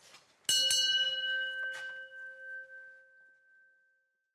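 Small metal bell hanging on a wooden front door, rung by hand: two quick strikes, then a clear ringing tone that fades away over about three seconds.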